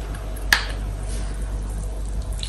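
A plastic screw cap being taken off a juice bottle, with one sharp click about half a second in, over a low steady hum.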